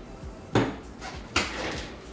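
A glass tumbler set down on a desk: a sharp clink about half a second in, then a second knock just under a second later with a short ringing tail.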